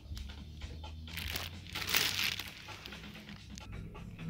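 Crinkling of a clear plastic product bag as it is handled, loudest about two seconds in, over faint background music.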